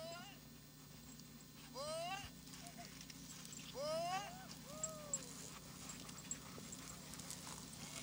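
Sled dogs in a running team giving a few short yelps that rise and fall in pitch: one at the start, one about two seconds in, and two close together around four seconds in. Faint scattered clicks and crunches follow.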